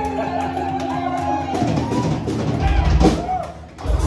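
Live country band playing, with acoustic and electric guitars and a drum kit: held notes for the first second and a half, then heavier drumming with strong bass-drum thumps past the middle.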